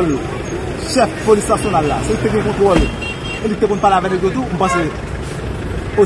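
Voices talking over a steady background of street noise.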